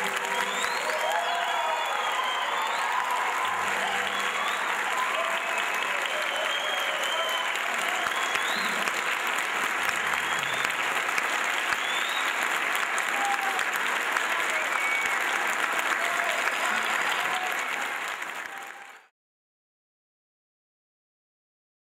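Audience and choir applauding steadily, with voices calling out over the clapping. The applause fades out about a second before the end, leaving silence.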